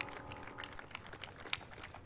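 Faint, irregular clicks and taps, several a second, with the tail of a music cue dying away at the start.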